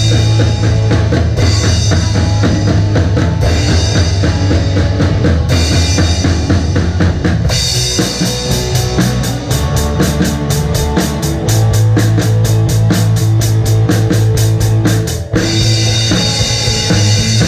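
Rock drum kit played live with a band, heard close up from the kit: kick and snare drive a steady beat under bass and electric guitar. Crash cymbals ring through the first half, then a quicker, tighter cymbal beat takes over about halfway, with a brief break near the end.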